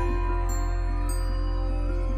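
Soft new-age-style background music with a deep held bass and sustained notes, and high chiming notes coming in about half a second and a second in.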